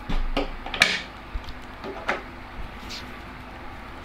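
Light handling noises from fishing tackle on a tabletop: a few short clicks and rustles as a spool of hook link material and a freshly cut length of line are handled, with a louder click about a second in.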